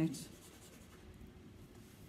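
Faint scraping and rubbing of a plastic plunger blossom cutter being pressed and worked into thinly rolled sugar paste on a steel worktop.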